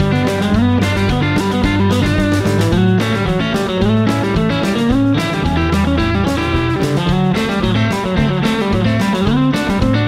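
Fender Telecaster electric guitar playing country "chicken pickin'" licks: staccato double-stop pull-offs moving through D, G and A over a backing track with a steady bass line.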